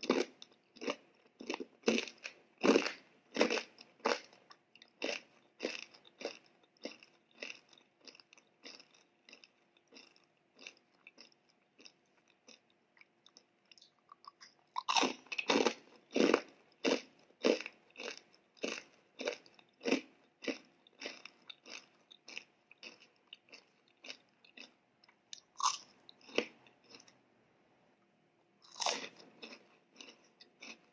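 Close-up chewing of a crunchy fried snack: a steady run of crisp crunches, about two to three a second, with louder clusters of fresh bites near the start and again about halfway through.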